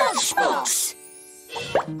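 Cartoon soundtrack: character voices call out at the start, then held musical tones like a magic chime as the word forms, with a gasp near the end.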